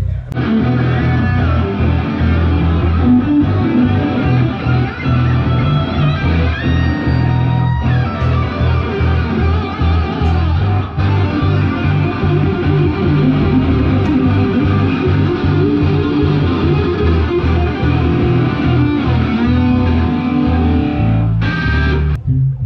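A rock band playing loudly through stage amplifiers at a soundcheck, with electric guitars and bass guitar.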